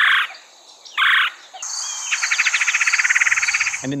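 Red-bellied woodpecker calling: two short rolling churrs about a second apart, then a rapid, evenly pulsed trill lasting about a second. A steady high insect buzz runs underneath.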